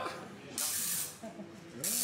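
Tesla coil firing in short bursts of hissing electrical discharge, once about half a second in and again near the end.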